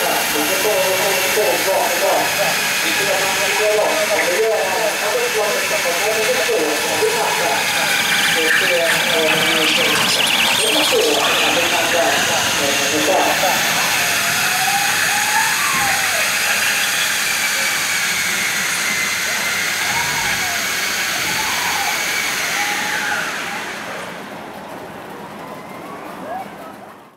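People's voices talking over a steady hiss and a high whine that wavers in pitch, with the sound dropping away over the last few seconds.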